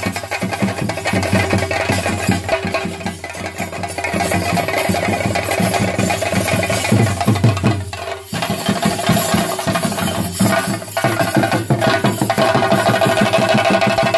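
Chenda drums beaten in a fast, dense rhythm as theyyam accompaniment, with steady tones held over the strokes. The sound dips briefly about eight seconds in, then carries on.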